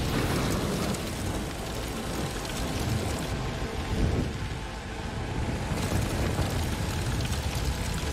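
Film sound effect of a magic fireball: a dense, rumbling fire noise, swelling at the start and again about four seconds in.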